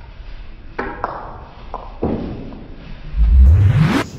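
Snooker cue and ball strikes slowed down so each knock rings lower and longer like a ping: a sharp hit about a second in and another about two seconds in. Near the end a loud sound sweeps up from low to high pitch.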